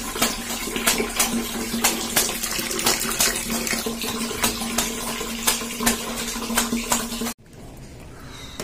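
Running water and splashing while clothes are washed by hand in a tub on a tiled floor, with a steady low tone under many small splashes. It cuts off suddenly near the end.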